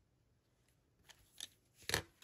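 Faint tabletop handling noises from paper crafting: a couple of soft taps, then a brief sharper clack near the end as a plastic pick-up tool is set down and the card is moved on the table.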